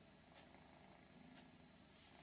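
Near silence with a cat purring faintly.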